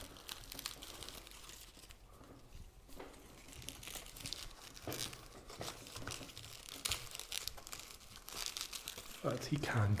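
Irregular crinkling, crackling and rustling as a small plant is worked out of its little pot and handled among leaves and moss: a scatter of soft clicks that grows busier in the second half.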